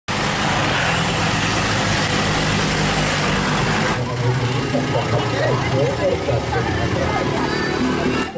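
Engine of an odong-odong mini tourist train running as it drives along the road, with a steady low hum under dense road noise. About halfway through, the road noise drops away and voices are heard over the engine.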